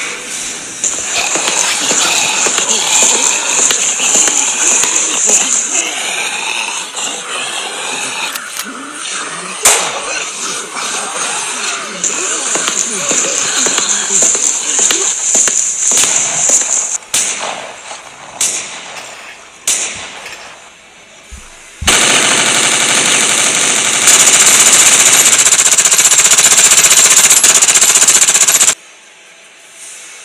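Automatic gunfire sound effect: a long unbroken run of rapid shots, the loudest part, starting abruptly about two-thirds of the way in and cutting off suddenly near the end. Before it, a busy layered mix of sounds with scattered sharp cracks.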